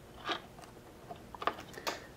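A few faint clicks and scrapes of small plastic jumper-wire connectors being pushed onto the header pins of a USBasp programmer board.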